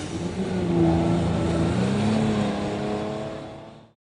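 WaterCar Panther's 3.7-litre V6 engine running, its pitch rising about two seconds in as it revs, then fading out near the end.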